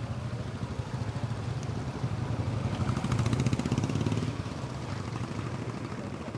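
Motorcycle engines passing on the road, the loudest one going by about three seconds in, over a steady low rumble of traffic.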